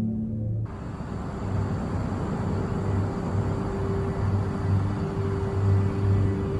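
Dark, ominous documentary underscore: a low tone pulsing about every 0.7 s under a steady held higher tone, with a hiss of background noise that comes in suddenly about half a second in.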